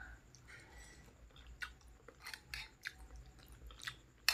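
Faint, close-up chewing of a mouthful of instant noodles, with a few short, soft clicks scattered through the second half.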